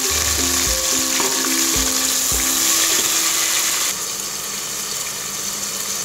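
Sliced tomatoes and fried onions sizzling steadily in hot oil in a pot, with a few soft low thumps in the first couple of seconds.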